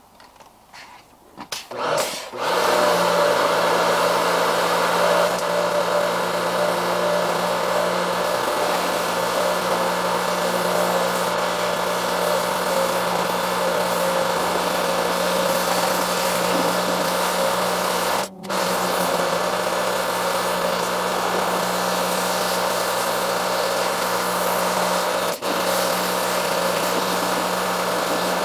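A pressure washer starts about two seconds in and runs steadily: a motor hum under the hiss of the high-pressure spray washing dirt and algae off pond rocks. The sound drops out for a moment twice.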